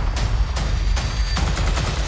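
Gunfire in an action-trailer sound mix: about four sharp shots spaced irregularly over loud, low-pitched trailer music.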